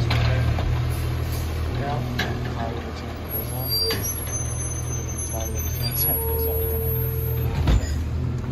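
Diesel engine of an Autocar WX garbage truck with a McNeilus Autoreach arm running as the truck pulls away, a steady low drone. There are a few light clanks, and a single low thump near the end.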